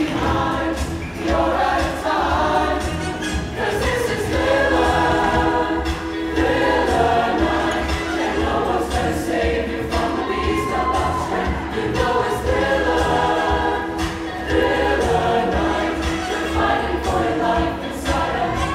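Large mixed show choir singing in full chorus over an accompaniment with a steady, pulsing bass beat.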